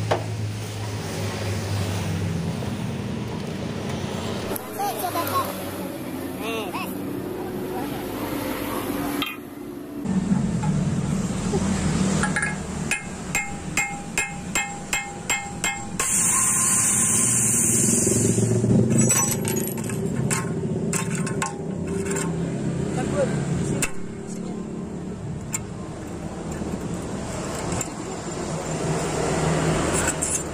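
Metal and glass clinking and knocking as a CRT television is dismantled by hand, including the glass neck of the picture tube around the electron gun. Midway there is a quick run of sharp clicks, followed by a brief hiss.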